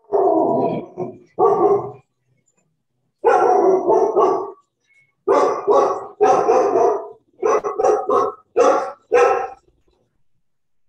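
A dog barking repeatedly, about a dozen loud barks in quick runs of two or three with short pauses between, picked up over a video-call microphone.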